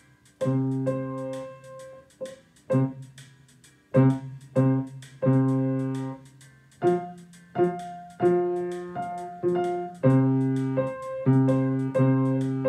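Grand piano playing a blues progression. Chords are struck in the low and middle register and left to ring and fade, with quicker, lighter notes in between.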